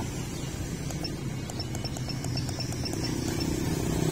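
Steady low rumble of nearby vehicle traffic. In the middle, a rapid run of light, evenly spaced ticks lasts about two seconds.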